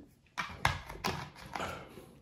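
Mouth sounds of a man eating rice with his hands: four short noisy chewing and breathing sounds in quick succession.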